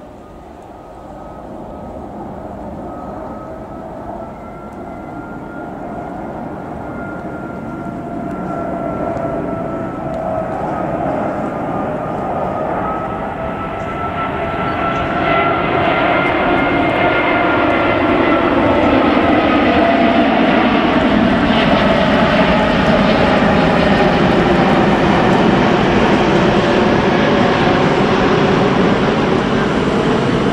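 Jet airliner on approach passing low overhead: engine noise building steadily for about eighteen seconds and then holding loud, with slowly wavering whistling tones running through it.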